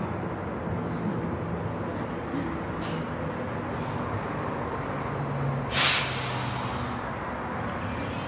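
City bus engine running close by over street traffic, then about six seconds in a loud hiss of the bus's air brakes lasting about a second.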